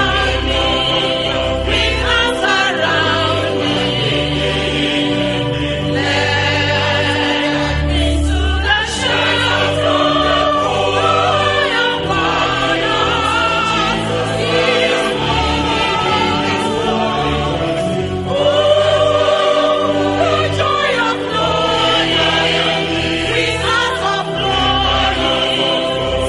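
Choral music: a choir singing long held chords over a low bass accompaniment.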